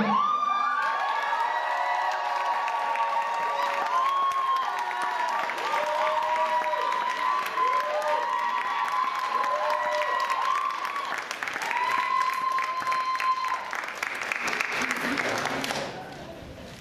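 Audience applauding and cheering, with many high-pitched whoops held over dense clapping. It thins out near the end.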